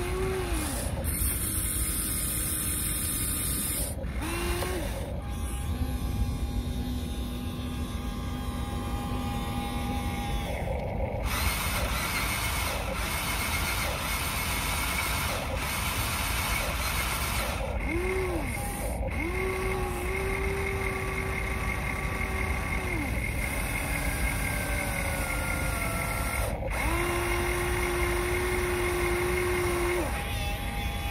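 Electric motors of a Huina remote-control excavator whining as the boom, arm and bucket move. The whine comes in stretches of a few seconds, each rising in pitch as a motor spins up, holding steady, then falling away, over a constant mechanical hiss.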